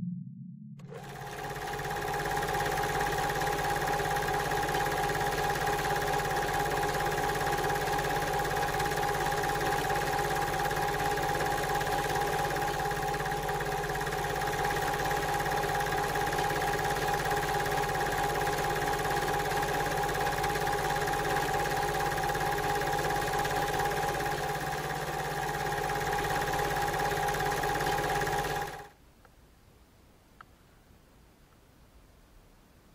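Old film projector running, added as a sound effect: a steady mechanical whirr with a constant hum, starting about a second in and cutting off suddenly near the end.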